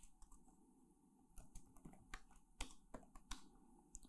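Faint typing on a computer keyboard: scattered key clicks, sparse at first and coming more quickly in the second half.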